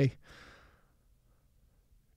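A man's breathy sigh, an exhale fading out within the first second, following the tail end of a spoken word.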